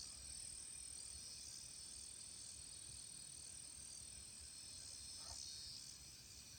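Very faint, steady insect chorus with a high, even chirring and nothing louder over it.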